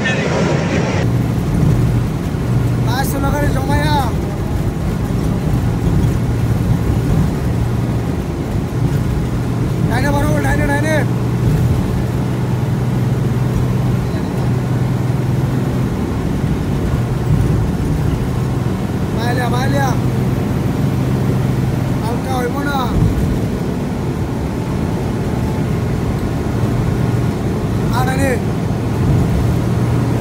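A road vehicle's engine and road noise drone steadily while driving at speed. Over it, a short sound with a wavering, warbling pitch comes five times, roughly every few seconds.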